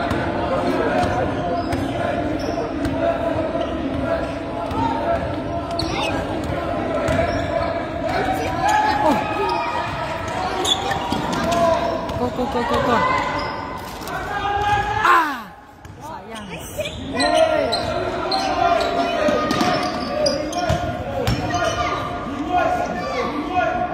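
A basketball being dribbled and bouncing on a gym floor during a game, mixed with players' and onlookers' voices in a large gym.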